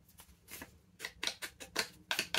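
Foam ink dobber being dabbed onto a silver metallic ink pad: a quick run of light taps starting about a second in.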